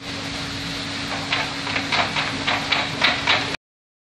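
Water play exhibit being worked by hand: a steady rush of running water and a low hum, with a quick run of clicks and clacks from the mechanism starting about a second in. The sound cuts off suddenly near the end.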